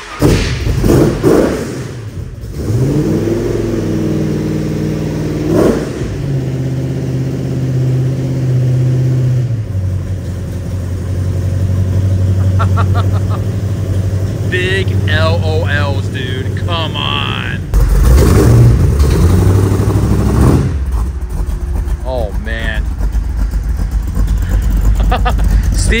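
Batman Tumbler replica's engine cold-starting: it catches at once, flares up in revs, then settles into a high fast idle that steps down in pitch twice as it warms. About eighteen seconds in it gets louder and keeps running.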